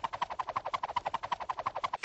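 Cartoon electric-shock sound effect: a rapid buzzing rattle of about twelve pulses a second.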